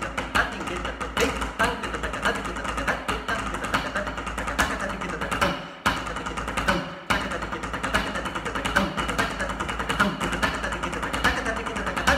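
Snare drum played with sticks in fast rudimental patterns, with dense strokes and accents. Rapid spoken konnakol syllables run alongside it, and the playing breaks off briefly twice around the middle.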